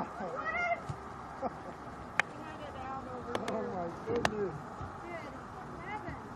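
Shouts and calls from players and spectators across an outdoor soccer field, too distant for words, with a few sharp knocks about two, three and a half and four seconds in.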